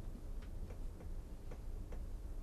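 Low, steady room noise with a few faint, scattered ticks.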